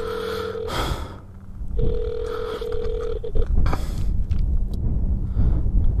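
Phone call ringback tone from a smartphone speaker: a steady tone heard twice, the first ring ending under a second in and the second lasting about a second and a half, while the call waits to be answered. Low rumble and short bursts of rushing noise run underneath.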